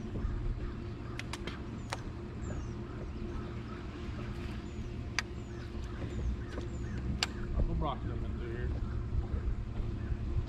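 Steady low hum of a bass boat's electric trolling motor, with several sharp clicks scattered through it.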